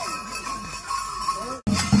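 Bells on costumed mummers clanking and jingling. Then, after an abrupt cut about one and a half seconds in, a drum starts beating a steady rhythm, about four strokes a second.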